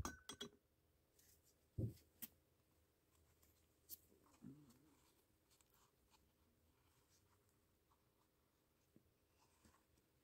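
Near silence, broken by a few faint, short handling sounds: a soft knock about two seconds in, then small clicks and rustles as a wet filter paper is worked out of a plastic funnel by gloved hands.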